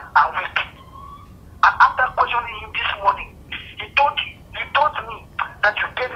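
A voice talking through a mobile phone on speakerphone, thin and narrow-sounding, with a short pause about a second in.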